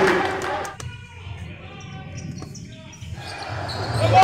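Crowd noise in a gym hall falls away about a second in. What is left is a basketball bouncing a few times on the hardwood court and voices echoing in the hall.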